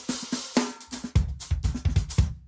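Short channel-intro music sting: a burst of noise at the start, then several drum hits (bass drum and snare) from about a second in.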